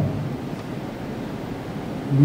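A pause in speech filled with a steady hiss of room and microphone background noise.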